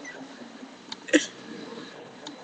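A single short, stifled laugh from a man, one quick breathy burst about a second in, just after a faint click; otherwise low room noise.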